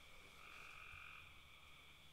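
Near silence: faint room tone with a thin, steady high-pitched hum.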